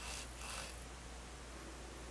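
Two brief faint rustles in the first second over a steady low hum.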